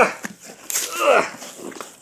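A person's straining grunt, falling in pitch, about a second in, as the side flap of a cardboard toy box is forced open, with a short scrape of cardboard as it starts.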